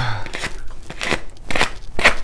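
A cardboard box being opened by hand: a run of irregular crackles and snaps from tape and cardboard flaps, the sharpest snap near the end.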